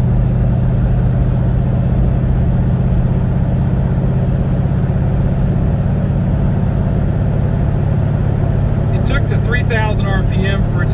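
Ford Torino's engine running steadily at cruise, heard inside the cabin with road noise; its pitch holds level, with no shift heard.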